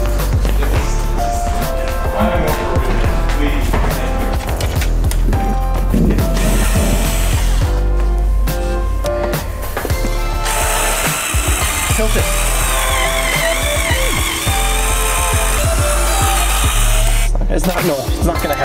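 Background music with a heavy, sustained bass line, breaking off briefly near the end.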